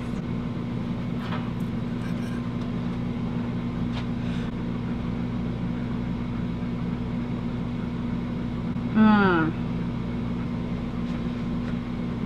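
Steady low mechanical hum of several fixed tones, with a woman's falling "mmm" about nine seconds in as she chews and tastes food.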